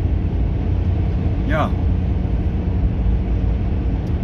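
Steady low rumble of a car on the move, heard from inside the cabin, with one short vocal murmur about a second and a half in.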